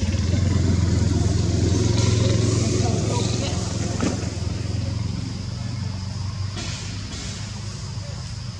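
A low, steady engine hum, like a motor vehicle running nearby, loudest in the first few seconds and fading after about six seconds. A single sharp click about four seconds in.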